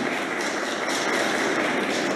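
Steady, even hiss of room ambience in a large assembly hall, with no voices.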